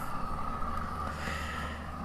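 Large handheld gas torch burning steadily, a rushing hiss of flame with a faint steady high tone, as it blisters chile peppers on a grill grate.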